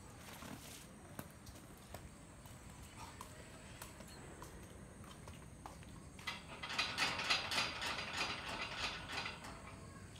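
A Labrador chewing a ball in its mouth, with scattered faint clicks at first and then a dense run of rapid crackling clicks for about three seconds in the second half.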